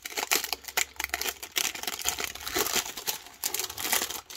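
Foil-lined plastic snack wrapper crinkling and tearing as it is peeled open by hand: a dense run of irregular crackles.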